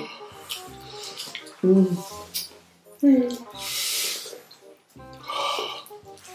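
People eating spicy chicken feet: short hums and mouth noises, with a breathy hiss lasting about a second around the middle, over background music.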